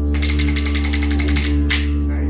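Didgeridoo playing a steady low drone. Over most of it runs a fast clatter of clicks, about a dozen a second, and a short hissing rush comes near the end.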